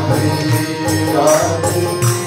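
Devotional kirtan: a harmonium sounds sustained notes while a man sings a chant over it, with percussion keeping a steady beat about twice a second.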